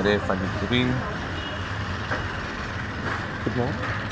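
Street traffic noise running steadily, with short bits of people's voices nearby in the first second and again near the end.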